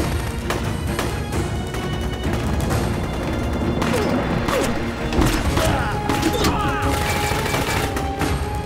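Gunfight sound effects over dramatic background music: scattered gunshots from pistols and rifles cut through a steady music bed, with some heavier booms and crashes.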